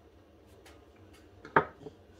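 A tobacco pipe being put down on a wooden workbench board: one sharp clack about a second and a half in, with a lighter tap just after, against quiet room tone.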